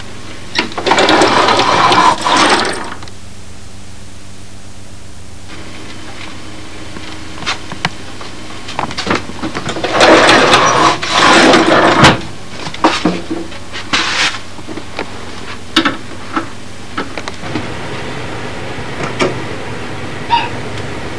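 Hands handling polystyrene foam wing-core blocks: two spells of foam rubbing and scraping, about a second in and again about ten seconds in, with scattered light knocks and clicks between them, over a steady low hum.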